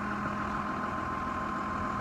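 Tractor engine idling steadily.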